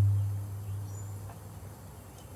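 Faint outdoor background noise with a low steady hum, which drops in level over the first half second.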